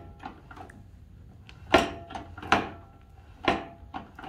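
Steering of a 1956 Wheel Horse RJ35 garden tractor turned by hand with a punch through the end of the steering shaft, the freshly rebuilt and greased linkage swinging the front wheels. Three sharp metallic clicks, roughly a second apart, with a few fainter taps between them.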